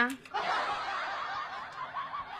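Soft, breathy laughter, a muffled snicker running steadily for under two seconds.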